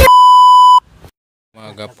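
A loud, steady test-tone beep of the kind that goes with TV colour bars, held for under a second and cutting off abruptly. After a brief silence, a man begins speaking.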